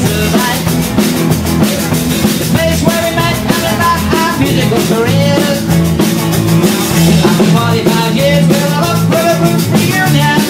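Live rock band playing a song: a drum kit keeping a busy beat with cymbals, under electric guitar.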